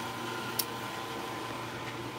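Steady low hiss and hum of room tone, with one faint click about half a second in.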